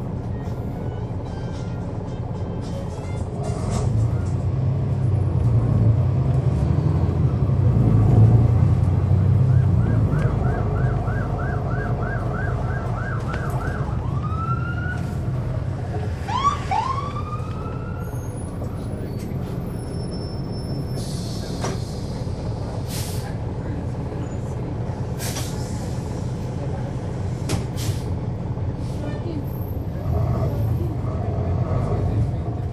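On-board sound of a NABI 40-SFW transit bus: its Cummins ISL9 inline-six diesel rumbles as the bus pulls away, building up to a peak and then easing to a steady cruise. Partway through, a siren sounds, first as rapid repeated rising sweeps and then as a few slower rising wails.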